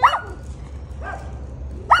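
Small white dog barking in short high-pitched barks: one sharp bark at the start, a fainter one about a second in, and a quick run of barks beginning near the end. The dog is barking at another dog that it sees in the distance.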